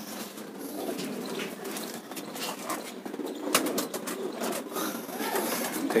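Domestic pigeons cooing, with a few sharp clicks or taps mixed in.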